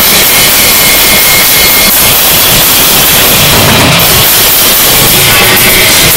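Harsh noise: a loud, dense wall of distorted electronic noise filling the whole range, with a high steady tone that fades out about two seconds in.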